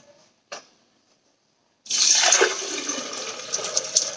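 Water pouring steadily into a plastic blender jar over hemp hearts, starting suddenly about two seconds in after a short tap.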